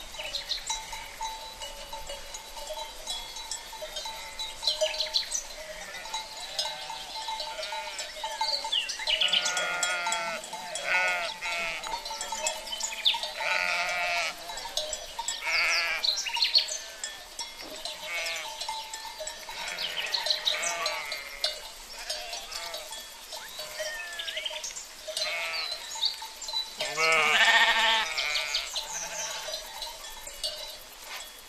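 A flock of small livestock bleating: many overlapping, quavering bleats every second or two, with the loudest call near the end. A faint steady tone runs underneath.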